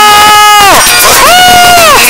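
A man's voice giving long, drawn-out calls into a microphone: one held note that falls off less than a second in, then a second, higher note held about half a second and falling off again at the end.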